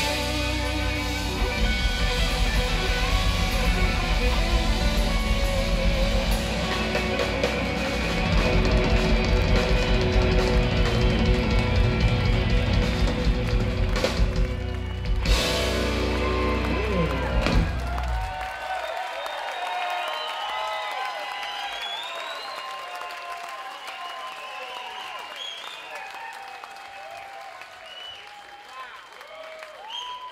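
Southern rock band playing live at full volume, several electric guitars over bass and drums, closing a song with two big final hits about halfway through and a last chord ringing out. Then the audience cheers, whistles and shouts, gradually fading.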